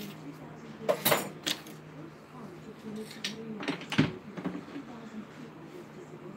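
Kitchen utensils and dishes clattering as a counter is cleared: a few sharp knocks and rattles about a second in, and again around three and four seconds, the last the loudest.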